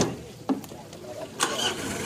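A pickup's driver door slamming shut, a second knock about half a second later, then the Mitsubishi L300's engine starting about one and a half seconds in and running on at idle.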